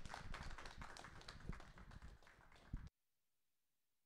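A small audience applauding, the clapping thinning and dying down, then cutting off suddenly about three seconds in as the recording ends.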